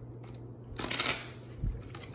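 Tarot cards being handled: a brief papery flurry of card sounds about a second in, followed shortly by a low thump.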